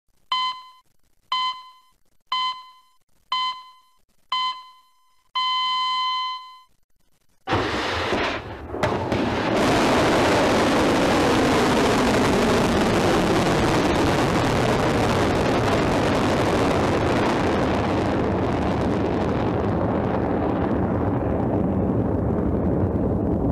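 Countdown signal of five short electronic beeps about a second apart and a final long beep. After a brief pause, the Pukguksong-2 solid-fuel ballistic missile launches with a sudden loud onset, followed by the steady rushing roar of its rocket motor as it climbs.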